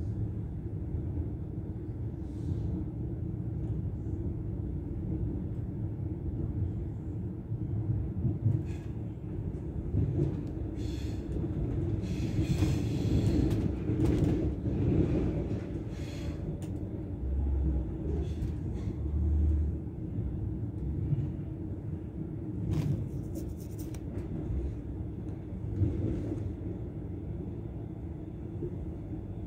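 Passenger train running, heard from inside the carriage: a steady low rumble with scattered clicks and knocks, growing louder for a few seconds in the middle.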